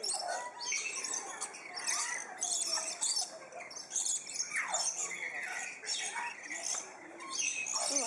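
A chorus of many birds calling at once: dense, rapid high chirps and squawks, with a few calls that slide down in pitch.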